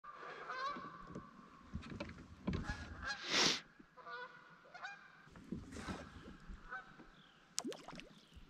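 Flock of geese honking overhead, repeated calls from several birds. A short louder rush of noise comes about three and a half seconds in.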